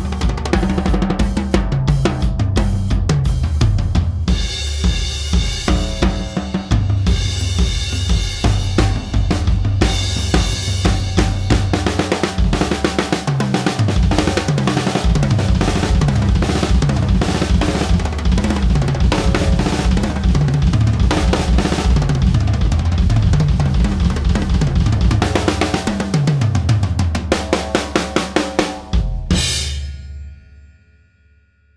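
TAMA Superstar Classic drum kit with thin maple shells and Meinl cymbals, played as a solo: kick, snare, hi-hat and cymbals, with repeated fills stepping down the toms. It ends near the end on a last crash that is choked by hand.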